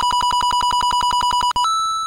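Electronic minigame-picker roulette sound effect: a rapid trilling beep of about a dozen pulses a second, which stops about one and a half seconds in and gives way to a single higher held tone that fades, as the minigame is chosen.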